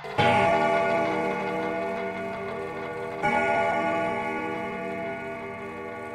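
Electronic bell-like chord struck twice, about three seconds apart; each rings on and fades slowly.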